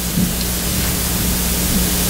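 Steady hiss with a low electrical hum beneath it: background noise from the pulpit microphone and recording chain, with no one speaking.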